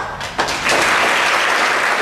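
Audience applauding at the end of a solo piano piece: it breaks out suddenly, dips for a moment, then swells into full, steady applause from about half a second in.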